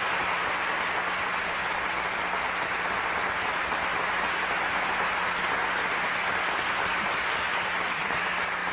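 Studio audience applauding steadily, with a low steady hum underneath.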